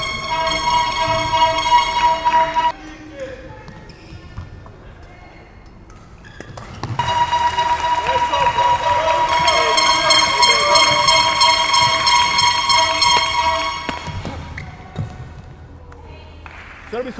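A horn sounding one steady held note, briefly at the start for about three seconds, then again for about seven seconds from about seven seconds in, over the noise of an indoor sports hall with a knock or two between.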